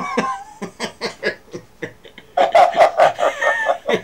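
A man laughing over a video call: soft, breathy chuckles at first, then louder, rapid laughter in the second half.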